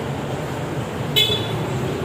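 Steady street-traffic noise with a short high-pitched toot about a second in.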